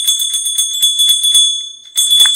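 Small bells jingling in a quick, even rhythm over a steady high ringing tone, dropping out briefly near the end.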